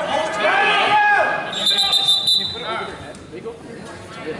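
Shouting voices of coaches and spectators in a gym, loudest in the first second. About a second and a half in there is a brief, high, steady tone lasting under a second.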